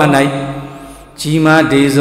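A Buddhist monk's voice, amplified through a microphone, delivers a sermon in a drawn-out, chanting intonation. A held syllable fades away about a second in, and the chant starts again on a steady pitch a moment later.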